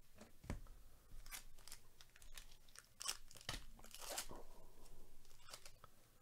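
Trading cards being handled by gloved hands: a stack of glossy baseball cards slid, shuffled and flipped. It sounds as an irregular run of soft papery scrapes and rustles, about eight strokes.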